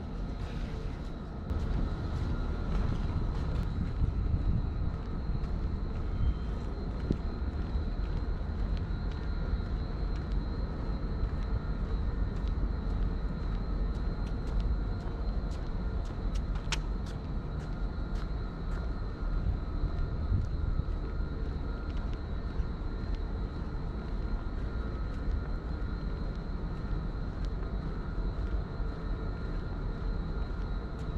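Outdoor background noise: a steady low rumble with faint steady tones over it and scattered light ticks, getting louder about a second and a half in.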